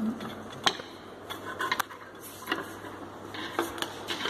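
Handling of a wooden embroidery hoop with cloth at a sewing machine: fabric rustling with a handful of short, sharp clicks and knocks at irregular intervals.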